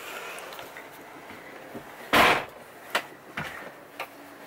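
A single heavy thump about two seconds in, followed by two light knocks, over quiet room noise.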